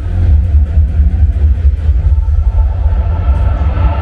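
Projection-mapping show soundtrack played loud over outdoor loudspeakers: a deep, steady rumble in a sparse stretch of its electronic music.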